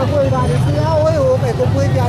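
A man talking in a local language over crowd chatter and a steady low rumble of road traffic.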